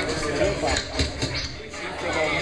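Several people talking in a crowd over music, with a few short sharp knocks about a second in.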